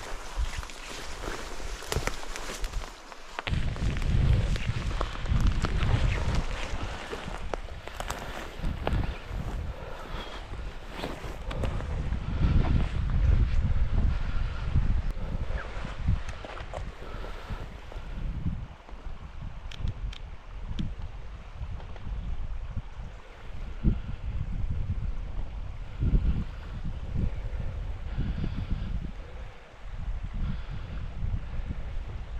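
Footsteps and rustling of leaves and branches while pushing through dense brush, mostly in the first half. Throughout, irregular low gusts of wind buffet the microphone.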